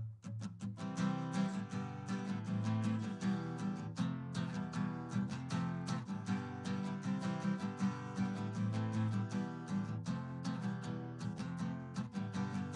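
Acoustic guitar strummed in a steady rhythm: the instrumental intro of a song.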